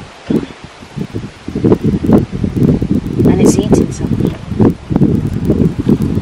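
Wind buffeting the microphone in uneven gusts, a low rumbling noise that starts about a second and a half in and carries on unevenly.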